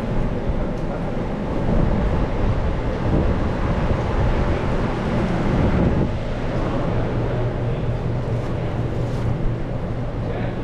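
Steady low rumble of a commercial kitchen's running ventilation and equipment. It swells a little in the middle and carries no clear rhythm or tone.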